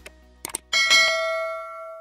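Subscribe-button sound effect: a few quick mouse clicks, then a bright bell ding that rings on and fades away over about a second.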